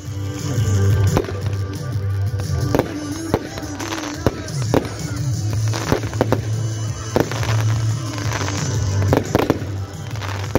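Aerial fireworks going off in irregular succession: a dozen or so sharp bangs of bursting shells, with music playing underneath throughout.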